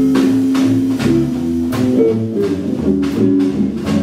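Jazz chord-melody played on a hollow-body archtop electric guitar: held chords with bass notes moving beneath them, and a steady pulse of picked accents about twice a second.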